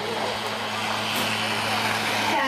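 Greyhound-track mechanical lure whirring along its rail past the starting boxes over a steady low hum. About a second in comes a sharp clack as the starting traps spring open and the greyhounds break.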